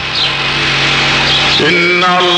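A pause in a man's Arabic devotional chant: a noisy, crowd-like background with one steady low tone. About one and a half seconds in, the chanting voice comes back with an upward glide.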